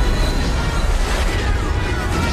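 Film explosion sound effect: a heavy, continuing low rumble of a large craft blowing up and burning, with orchestral score playing over it.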